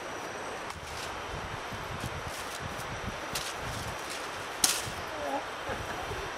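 Outdoor background noise with a low rumble on the microphone, and one sharp thump a little over four and a half seconds in.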